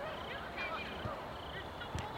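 Distant shouts and calls from players on a soccer field, short and bending in pitch, with a sharp knock near the end.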